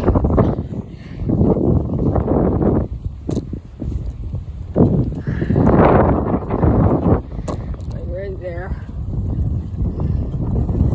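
Gusty wind hitting a phone's microphone: a low rumbling noise that surges and drops unevenly. About eight seconds in there is a brief wavering, voice-like pitched sound.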